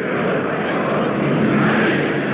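Massed ranks of Volkssturm men repeating a line of their oath in unison: a loud, blurred wash of many voices with no single words standing out, swelling as it starts.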